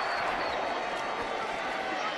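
Steady crowd noise from a football stadium's spectators.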